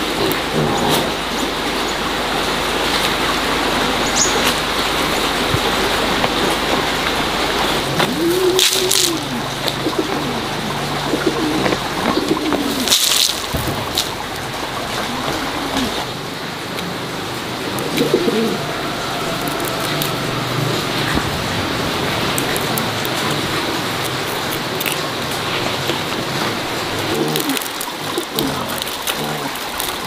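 Doves cooing: a series of low, arching calls repeating every second or two over a steady background hiss, with two brief sharp noises about nine and thirteen seconds in.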